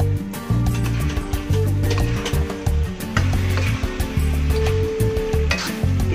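Background music with a steady beat over the sizzle of ground beef, diced potatoes and carrots frying in a steel wok, with a spoon stirring. Near the end, water is poured into the hot wok.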